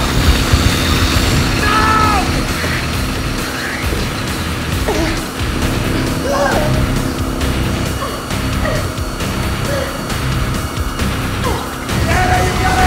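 Film soundtrack: a tense score over a motorcycle engine running steadily to power a spinning spiral blade trap. Short cries from the man hanging above it rise over the mix now and then.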